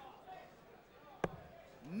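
A single steel-tip dart striking a bristle dartboard about a second in, one sharp thunk.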